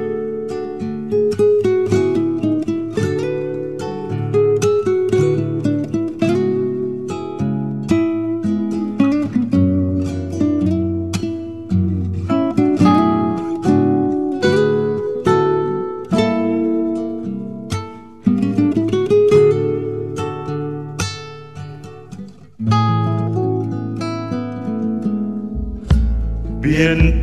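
Instrumental break in an Argentine folk song: acoustic guitar plucked and strummed over a bass line, with no singing.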